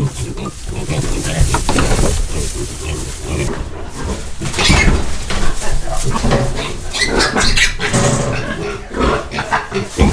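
Piglets squealing in loud high-pitched bursts as they are caught and carried by their hind legs, with the loudest squeals about five seconds in and again around seven to eight seconds, over grunting and rustling in the bedding.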